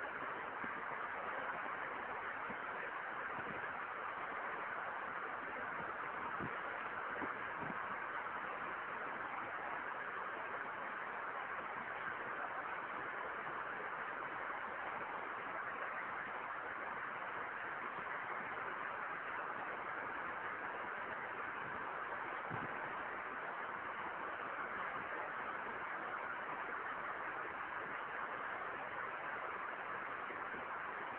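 Steady, even hiss of background noise from the lecture recording, with no speech, and a few faint low knocks.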